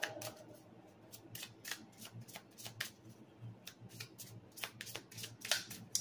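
Tarot cards being shuffled by hand: a faint, irregular run of soft card flicks and taps, several a second.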